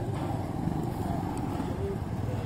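Motorcycle engines running at the roadside: a steady low rumble of street traffic.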